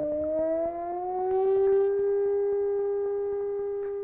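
A dolphin whistle slowed down about 20 times and played back: one long tone with overtones that rises slightly in pitch over the first two seconds, then holds level. Slowed this way it sounds remarkably like a wolf howl. Faint, evenly spaced ticks run beneath it.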